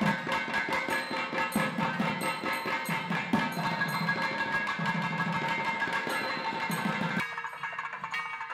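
Two thavil barrel drums played together in a fast, dense rhythm of sharp strokes, over a steady held tone. The drumming drops away about seven seconds in.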